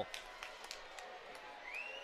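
Faint ice-hockey arena ambience: low crowd noise with a few sharp clicks, and a steady high tone that comes in near the end.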